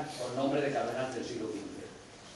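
A man's voice reciting, with a pause near the end.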